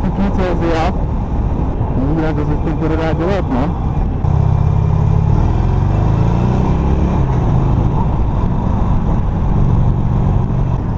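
Harley-Davidson Sportster Iron's air-cooled V-twin rumbling as the bike rides through town, heard from the rider's position with wind noise. About four seconds in the engine note jumps louder and stays so, as the bike is ridden harder.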